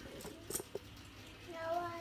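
A small child's voice: one short, high-pitched vocal sound near the end. A single sharp click comes about half a second in.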